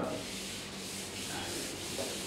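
Steady rubbing against a whiteboard's surface, an even scratchy hiss without distinct strokes.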